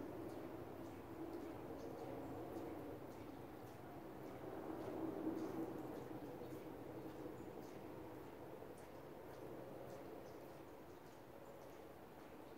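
Faint, soft scratching and dabbing of a paint-loaded brush on rice paper over a quiet, steady background hum. The hum swells slightly about halfway through.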